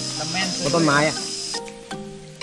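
A steady, high-pitched insect drone with a thin whine runs under a man's short spoken phrase, then cuts off suddenly about one and a half seconds in. Acoustic background music with plucked notes takes over at that point.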